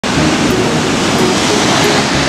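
Ocean surf washing up a sandy beach: a loud, steady rush of water, with faint music notes underneath.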